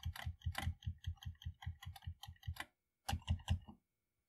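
Commodore 64 keyboard keys being pressed in a quick, even run of clicks lasting about two and a half seconds, followed by a few more key clicks a little after three seconds in.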